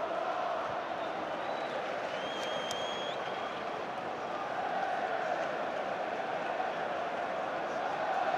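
Football stadium crowd noise: a steady din of thousands of fans in the stands, with a brief high whistle cutting through about two to three seconds in.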